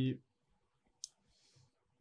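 A single sharp computer mouse click about a second in, followed by a faint, brief rustle.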